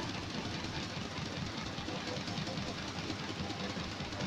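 Rock backing track in an instrumental passage with no singing: a dense, steady low rumble of drums.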